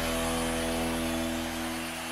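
Sustained final chord of a TV sports programme's theme jingle, held several notes at once and slowly dying away.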